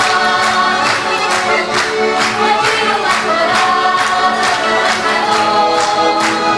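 Women's voices singing an Azorean carnival bailinho song in unison, a lead singer with a small chorus, over a strummed acoustic guitar and accordion keeping a steady beat of about two to three strums a second.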